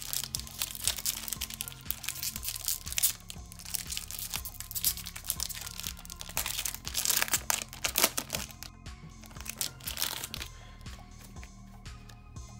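Foil wrapper of a Pokémon booster pack crinkling and tearing as it is ripped open and the cards are pulled out, the crackle thinning out near the end. Background music plays underneath.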